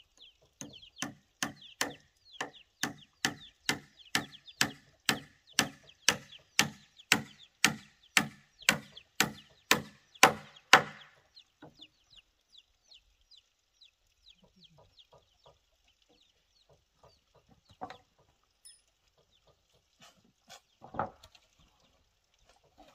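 Steady hammer blows on a timber beam, about two a second for some ten seconds, growing louder, then stopping. Afterwards faint high chirping and a few scattered wooden knocks, one louder near the end.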